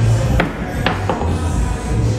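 Music with a heavy bass beat, over which a mini-golf putter strikes the ball with a sharp click about half a second in, followed by two lighter knocks of the ball.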